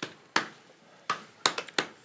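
Playing cards being dealt onto a felt poker table: about six sharp, separate clicks and snaps over two seconds as the dealer handles the deck.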